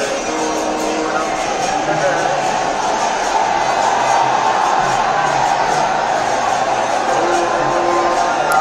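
Steady din of a very large street crowd, with music playing over it.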